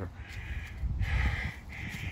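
A bird calling three times outdoors, each call a harsh, rasping sound about half a second long, over a low rumble.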